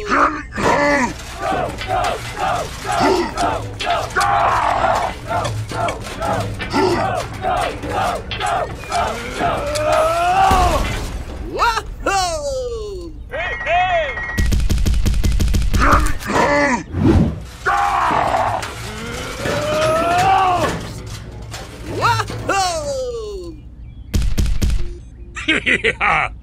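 Dubbed cartoon-style character voices: a long run of short, repeated laughing syllables, then sliding cries and groans, over background music. A short, rapid clattering sound effect comes about halfway through.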